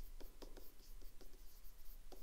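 Faint scratching and light ticking of a stylus writing by hand on a tablet screen.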